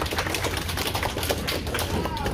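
A small group clapping: a quick, irregular patter of sharp claps over a low steady hum.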